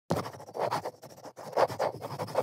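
Cloth rubbing over the leather of a shoe in repeated quick, scratchy strokes as the shoe is polished.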